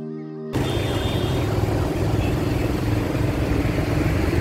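Background music for about the first half second, then a sudden cut to loud road noise: a motor vehicle engine rumbling amid street traffic.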